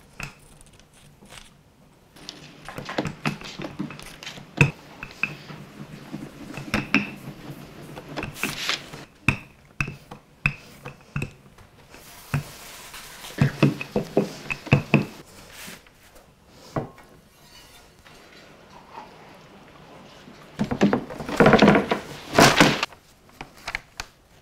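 Wooden rolling pin rolling pie-crust dough on parchment over a wooden counter, with scattered knocks and taps. Near the end comes a louder stretch of rustling and knocking as a ceramic baking dish is laid on the dough.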